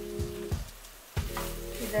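Fresh grated coconut sizzling in ghee in a stainless-steel kadai, with a spatula knocking against the pan a few times as it is stirred. Instrumental background music plays over it and drops out briefly just past the middle.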